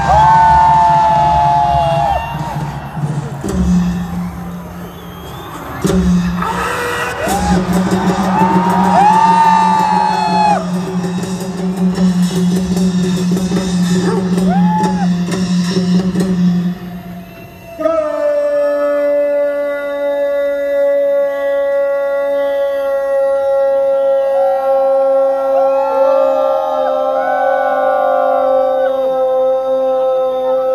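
Music and voices over loudspeakers with a crowd cheering. About eighteen seconds in, a single voice starts one long, unbroken shout on one slowly falling note and holds it for over ten seconds, typical of a soldier's drawn-out parade command at the border retreat ceremony, with crowd whoops over it.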